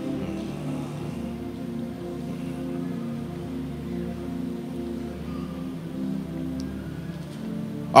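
Soft background music of slow, held chords, low in pitch, changing every second or so.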